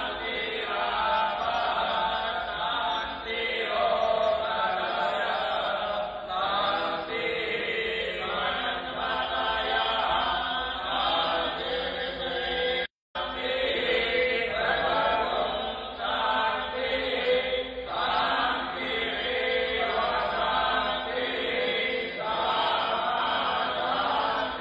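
A man chanting Hindu puja mantras into a microphone, a steady phrased recitation with short breaths between lines. The sound cuts out completely for a split second about halfway through.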